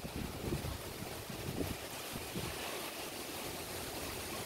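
Tropical-storm wind gusting: an unsteady buffeting rumble on the microphone over a steady rushing hiss.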